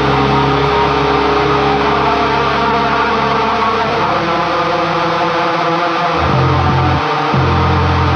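Atmospheric black metal recording: a dense, noisy wall of distorted guitar over held low bass notes. About five and a half seconds in, the low end drops out for a moment and returns as a new riff of long low notes broken by short gaps.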